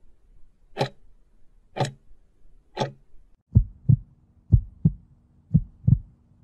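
Countdown sound effect: a sharp tick once a second, three times. About halfway through it changes to three pairs of deep thumps, about a second apart, over a low steady hum.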